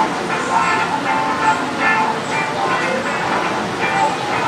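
A person's voice, over a steady background noise.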